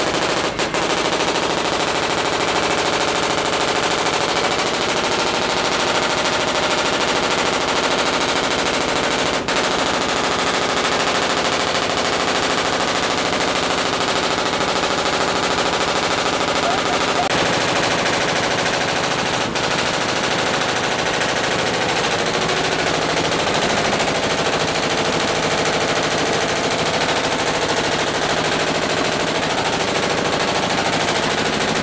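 Belt-driven workshop machinery, such as the lathe that turns and sands cricket bat handles, running steadily with a loud, dense mechanical noise.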